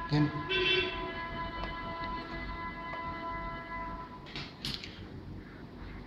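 A chord of background music held steady for about four seconds, then a few short plastic clicks as the back cover of a payment-terminal printer is taken off.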